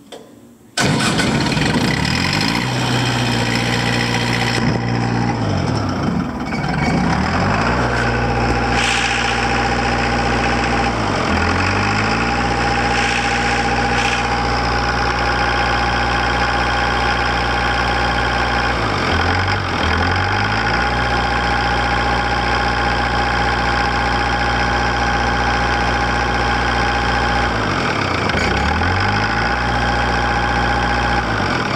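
Continental TMD27 diesel engine of an engine-driven welder starting up abruptly about a second in, then running steadily. A steady higher-pitched whine joins the engine note after several seconds.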